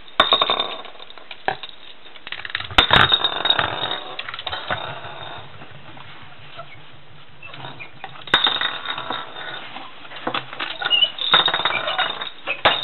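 Clear plastic bowl knocking, rattling and scraping on a countertop as a pet lorikeet plays with it. The clatter comes in several sudden bursts with quieter stretches between.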